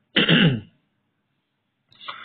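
A man's short throat-clearing cough, about half a second long, just after the start.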